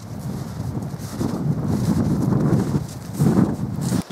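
Wind gusting across the microphone, a rough low rustle that swells and eases a few times.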